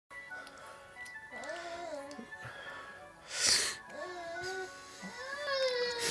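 Baby cooing in three drawn-out vowel sounds that rise and fall in pitch, over a tinkly electronic toy melody from a baby play mat. A short, loud noisy burst comes about halfway through.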